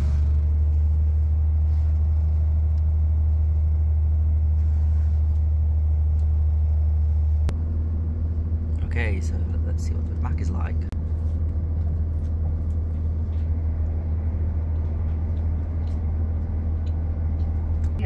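Cabin sound of a Class 170 Turbostar diesel multiple unit, its underfloor diesel engine running with a steady low rumble as the train gets under way. About seven seconds in there is a sharp click, after which the engine note changes. A brief voice is heard a couple of seconds later.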